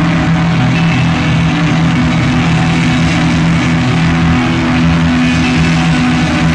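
A post-rock band's distorted electric guitars and bass, loud and held on one steady chord that drones without clear drum beats.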